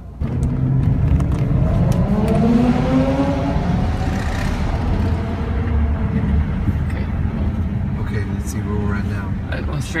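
Car engine and road noise heard from inside the cabin while driving. The engine pitch rises as the car accelerates about two seconds in, then settles into a steady drone.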